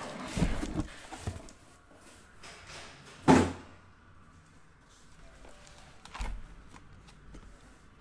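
Handling noises as a cardboard shipping case and shrink-wrapped aluminium card briefcases are moved about on a table: rustling and light knocks, with one loud thump about three seconds in and a softer knock a few seconds later.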